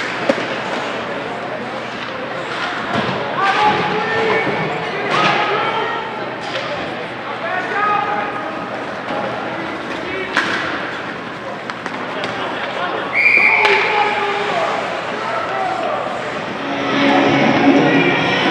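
Ice hockey game in a rink: sharp knocks of puck and sticks against the boards and ice every few seconds over spectators' chatter. A short high whistle sounds about thirteen seconds in, and crowd voices swell near the end as play stops.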